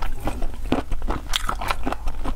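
Close-miked chewing of raw marinated black tiger shrimp: a quick, irregular run of wet clicks and crackles from the mouth.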